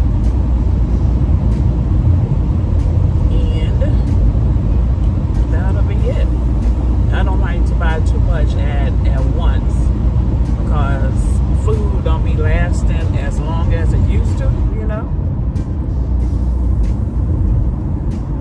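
Steady low road and engine rumble inside a moving car's cabin. A voice is heard over it from about five seconds in until near the end, without clear words.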